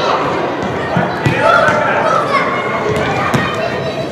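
Shouted calls from the players and bench echoing in a large indoor football hall, with a few sharp thuds of the ball being kicked on artificial turf.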